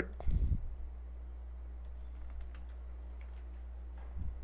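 Scattered faint clicks of a computer mouse and keyboard while a password is copied from a text note and pasted into a web form, over a steady low hum.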